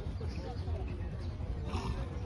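Open-air ambience: a steady low rumble of wind on the microphone, with distant voices murmuring.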